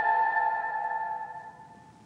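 Background music ending: a last held note rings on and fades away to near silence.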